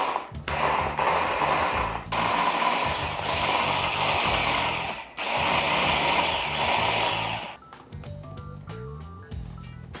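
Hand blender running on its chopper bowl attachment, grinding herbs, garlic and oil into a marinade paste in several bursts with brief pauses between them. The motor stops near the end.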